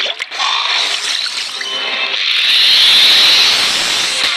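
Cartoon soundtrack: background music with a hissing, water-like sound effect that swells and grows louder, peaking about three seconds in, as a fish puffs up into a spiny ball.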